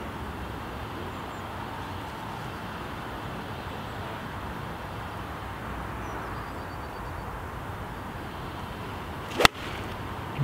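A golf wedge swung at a ball on fairway turf: a brief swish and then one sharp, loud crack of the clubface striking the ball near the end, over a steady low background hiss.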